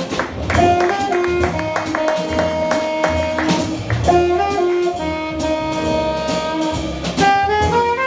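Live hard bop jazz: an alto saxophone plays a melody line over piano, double bass and a drum kit with cymbals.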